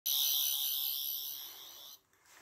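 A high ringing sound effect that starts suddenly, fades away over about two seconds and stops abruptly, laid over a white flash-in transition.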